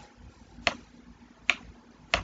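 Two sharp computer mouse button clicks, about 0.8 s apart, as a text box is resized and dragged on screen.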